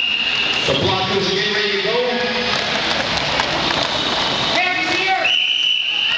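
Voices and crowd noise in a roller-rink arena, with a dense rumble of noise through the middle. About five seconds in, a referee's whistle starts a single long, steady blast.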